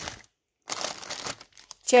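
Plastic food packaging crinkling as a wrapped package is picked up and handled, in two stretches with a short gap between.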